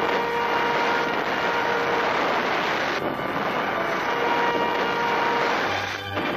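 Flamethrower firing: a steady, dense rushing roar that dips briefly about halfway through.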